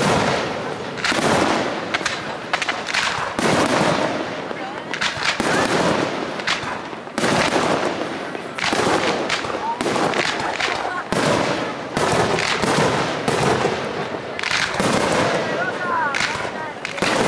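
Aerial firework shells launching and bursting in quick succession, about one or two bangs a second, each trailing off in echoes.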